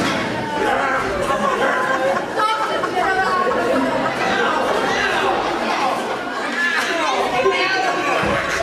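Several voices shouting and talking over one another at once, a jumble of overlapping speech with no single voice clear, in a large hall.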